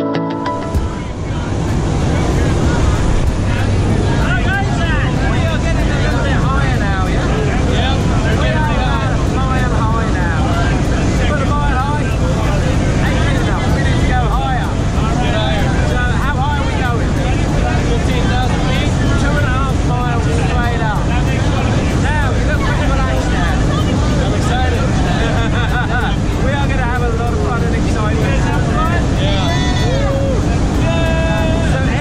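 Loud, steady engine and wind noise of a small single-engine jump plane, heard from inside its cabin, with several people talking and calling out over it.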